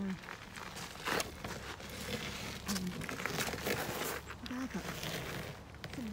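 Crackling, crinkling rustles and irregular clicks of close handling and movement noise, with a couple of short murmured voice sounds about halfway through and again later.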